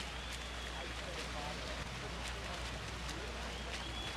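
Steady wash of pool-side ambience: freestyle swimmers splashing through the water, with a murmuring crowd behind.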